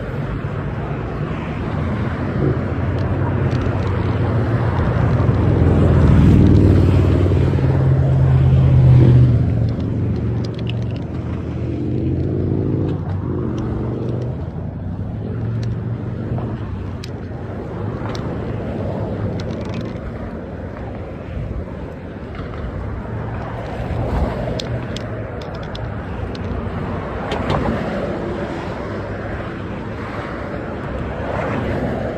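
Road traffic passing on a street beside the sidewalk, a vehicle's engine hum swelling to its loudest about six to nine seconds in and then fading away.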